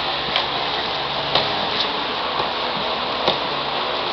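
A handful of faint, short taps and knocks from young children sparring in padded gloves on a mat, scattered irregularly over a steady room hiss.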